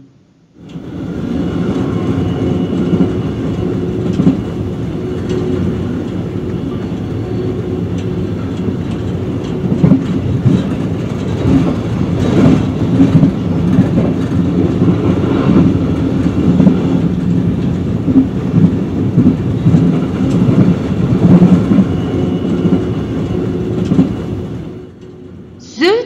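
Car-carrying train (Autozug) running at speed: a steady, loud rumble of wheels on the rails with a low hum, and scattered sharp clacks over rail joints in the middle stretch. It starts about half a second in.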